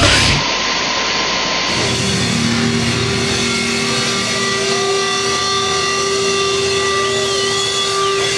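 Loud grindcore music cuts off about half a second in. After it come several steady held tones, guitar amplifier feedback and hum, over live-room noise between songs.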